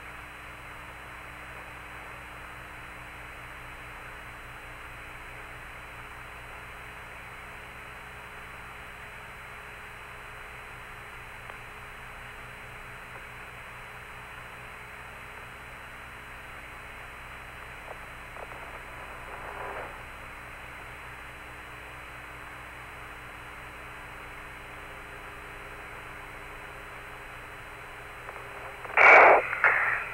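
Steady radio static hiss with low steady hum on the Apollo lunar-surface voice link while no one transmits. A faint swell comes a little past halfway, and a loud burst of crackle near the end as a transmission opens.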